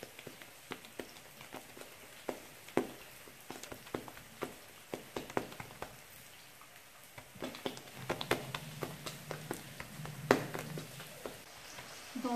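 Hands pressing and patting a ball of bread dough flat on a countertop: scattered light taps and soft slaps of palm and fingers. A low hum joins for a few seconds in the second half.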